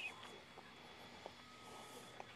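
Near silence: faint background hiss between spoken lines, with one tiny tick about a second in.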